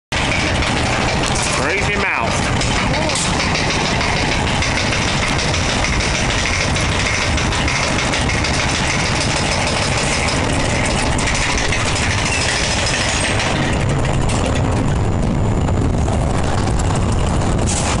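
Wild mouse roller coaster car climbing the chain lift hill: a steady, loud mechanical rattle of the lift, mixed with voices and fairground noise. The sound grows a little duller in its upper range near the top of the climb.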